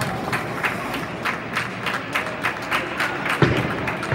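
Bowling-alley din of five-pin bowling: irregular sharp clacks and knocks of balls and pins from the surrounding lanes over a steady background hubbub, with one heavier thud about three and a half seconds in.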